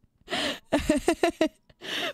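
A woman's breathy laughter: a quick run of short gasping bursts, about six a second, followed near the end by a breath.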